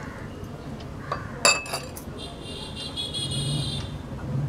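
Steel spoon clinking against a glass mixing bowl several times about a second in, followed by a high, steady squeal for nearly two seconds as the flour is stirred.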